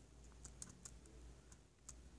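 Faint clicks from a laptop being operated: a handful of short, sharp ticks, three close together about half a second to a second in and one near the end, over a low steady hum.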